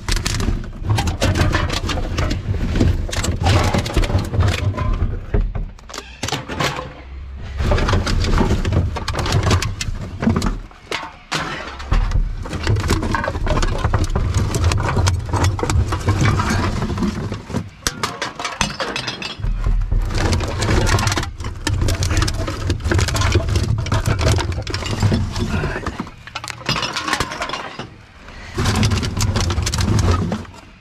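Rubbish being rummaged by hand in a dumpster: plastic bottles crinkling and cardboard, cans and packaging rustling and knocking in a dense, irregular run of clicks and scrapes, over a steady low rumble.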